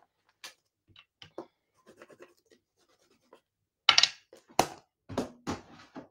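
Soft scratchy rubbing as a small clear stamp on its acrylic block is wiped clean, then a few sharp clicks and taps about four to five seconds in as the block is handled on the desk.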